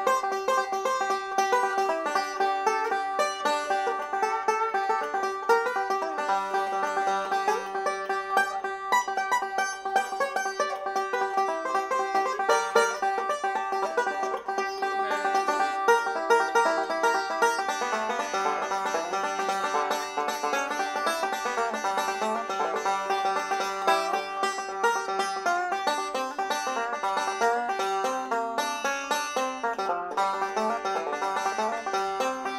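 1981 Stelling White Star five-string resonator banjo picked solo with fingerpicks: a continuous stream of quick plucked notes with no break.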